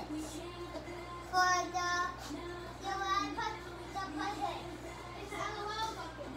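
A child singing a tune in several short phrases of held notes.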